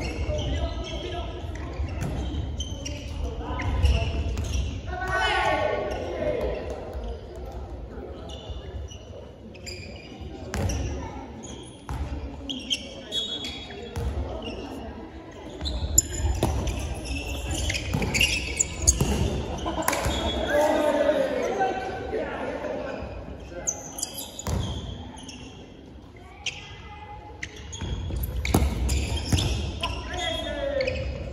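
Dodgeball play on a wooden gym floor: the ball smacking against players and bouncing off the boards several times, mixed with players' voices calling out, all echoing in the large hall.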